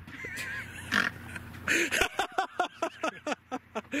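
Men laughing: a high, wavering laugh near the start, then a fast run of short 'ha-ha' pulses through the second half.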